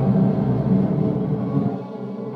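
Vinyl record playing in reverse on a portable two-arm turntable: dense, low, sustained backwards music with a rumble underneath, which thins and drops in level near the end.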